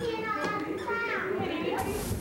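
Young children's high-pitched voices, sing-song, with a short burst of hiss near the end.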